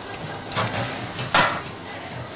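Two short clatters, the second louder, as an oven dish is pulled out of a wall-mounted grill.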